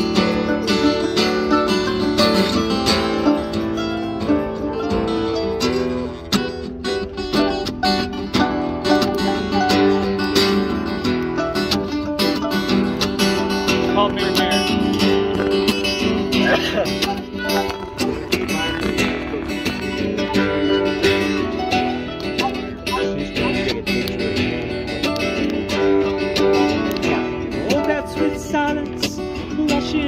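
Acoustic guitar strummed together with a mandolin in an informal acoustic jam, playing a song's steady accompaniment.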